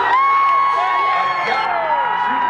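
Concert crowd cheering and whooping loudly, with long high cries and whistles close to the microphone while the band's music drops away.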